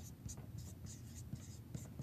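Felt-tip marker writing on a whiteboard: a run of short, faint scratching strokes as a word is written out.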